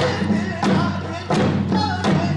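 Buk, a Korean barrel drum, struck with a stick in steady beats about two-thirds of a second apart. Under it runs Korean traditional accompaniment music with held pitched tones.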